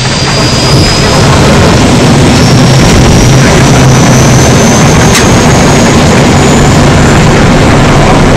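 Loud, steady jet engine roar with a high whine that climbs steadily in pitch, like a turbine spooling up.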